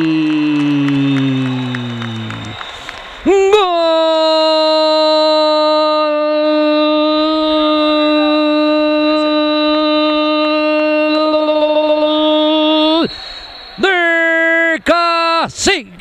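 A sports commentator's long drawn-out goal cry: a falling shout, a short break, then one 'gooool' held at a steady pitch for about ten seconds, followed by a string of swooping, wavering cries near the end.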